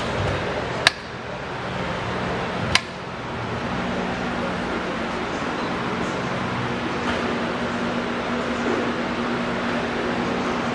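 Two sharp clicks about two seconds apart, then a steady hum and hiss from a switched-on upright garment steamer warming up to make steam for softening old window tint.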